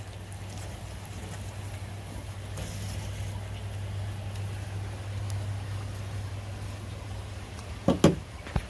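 A steady low hum over faint background noise, with a sharp click near the end.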